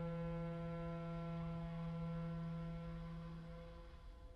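Clarinet and viola holding long sustained notes together: a steady low note with a higher note above it, fading away. The low note stops just before the end while the higher one lingers.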